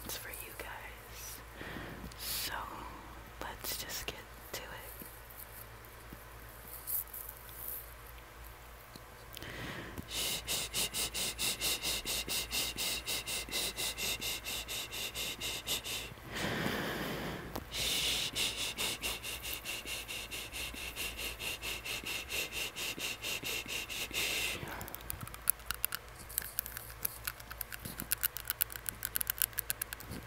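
Tongue ring clicked against the teeth behind a surgical mask as ASMR mouth sounds. Scattered clicks at first, then long runs of rapid, even clicking, several a second. A short breathy sound comes about midway, and faster, irregular clicks come near the end.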